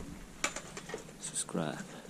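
A man's voice, a brief murmured sound past the middle, with a few light clicks just before it.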